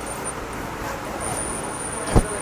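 Steady background noise of a shop, like distant traffic, with a thin high-pitched whine that starts about halfway through.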